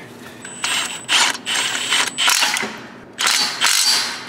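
Ratcheting clicks from hand-tool work on a metal bracket, in about four short runs of under a second each with brief pauses between them.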